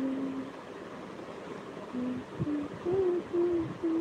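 A woman humming a slow tune: one low note held briefly at the start, a pause, then a run of short notes from about two seconds in.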